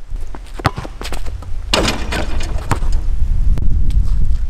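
Basketball run-up and dunk on an outdoor hoop. Sharp knocks and thuds of footsteps and the ball come with one louder, longer rattling impact near the middle, over a steady wind rumble on the microphone.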